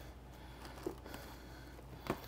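Quiet kitchen room tone with a steady low hum and a faint small click a little under a second in, from handling at the sink.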